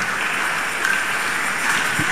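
A large audience applauding, a steady even clatter of many hands clapping.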